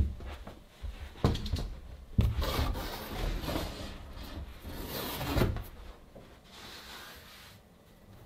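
A large wooden board being handled and stood up: several knocks as it bumps about, with a longer scraping, rubbing sound from about two seconds in to about six seconds in, then it goes quieter.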